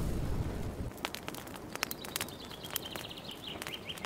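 Intro sound effect of fire crackling: the low rumble of a boom dies away in the first second, then scattered sharp crackles like burning embers, with a faint high whine joining about halfway through.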